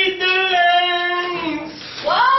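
A high-pitched human voice holding one long note for nearly two seconds, dropping slightly in pitch just before it ends.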